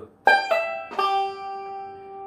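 Five-string banjo played slowly, note by note: a high note on the first string pulled off to a lower one, then the fifth string picked about a second in and left ringing.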